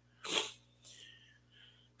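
A man's quick, sharp breath in, a short airy burst between sentences, followed by fainter brief mouth sounds about a second in.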